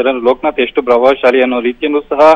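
Speech only: a man reporting in Kannada over a telephone line, the voice cut off above the middle range.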